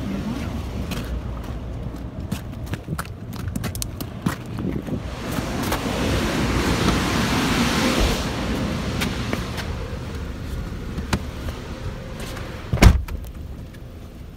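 A car door slammed shut with a single heavy thump near the end, the loudest sound here. Before it come scattered handling clicks and a rustling stretch over a steady low outdoor rumble.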